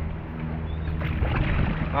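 Sea water lapping around a plastic sit-on-top kayak, with wind on the microphone and the paddle being handled and lifted from about a second in.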